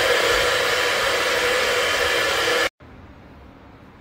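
Handheld hair dryer blowing, a loud steady rush with a hum, cutting off abruptly about two and a half seconds in; then a faint steady hiss.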